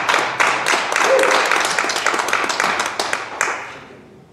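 Audience clapping, dense at first and dying away near the end.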